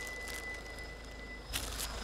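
Car engine idling low and steady, with a faint, steady high-pitched tone that stops about one and a half seconds in, followed by a brief rustle.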